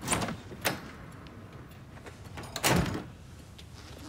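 A door being opened and pulled shut: a short noise and a sharp click in the first second, then a louder thud as it closes nearly three seconds in.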